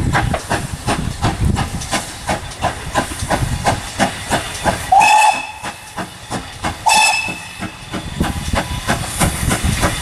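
Steam locomotive working a passenger train, its chimney exhaust beating at about three beats a second with a steady hiss of steam. The whistle sounds two short blasts, about five and seven seconds in.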